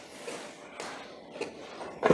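Faint scraping and a few light clicks of a flat screwdriver prying at the metal end cap of a washing-machine motor to work it loose.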